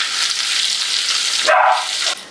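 Sliced onions sizzling in hot oil in a non-stick pan while a silicone spatula stirs them. Near the end comes a short, louder sound with a pitched tone in it.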